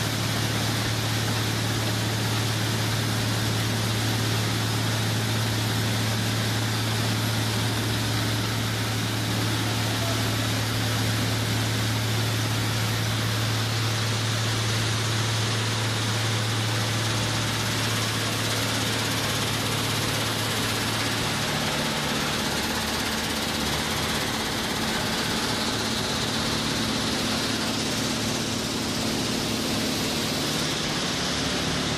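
Machinery running steadily, with a strong low hum over a broad rushing noise; about two-thirds of the way through the hum shifts to a different, higher pitch.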